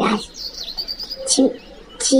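A bird chirping: a quick run of short, high notes about half a second in.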